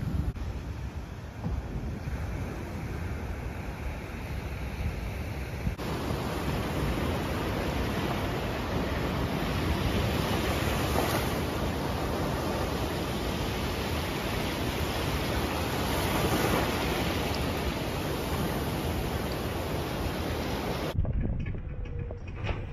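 Surf washing up on a sandy beach: a steady rush of waves with wind on the microphone. The sound changes abruptly about six seconds in, from a duller wash to fuller surf, and cuts off suddenly about a second before the end.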